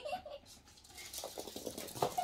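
Chihuahua puppies' claws pattering on a laminate floor as they run, a quick run of light clicks that thickens in the second half.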